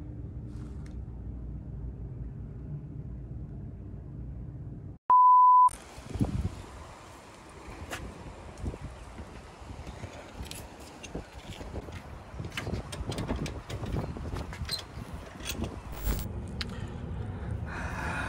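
A low steady rumble, then a loud, steady electronic beep at one pitch lasting under a second about five seconds in. After it comes a quieter background with scattered light clicks and taps.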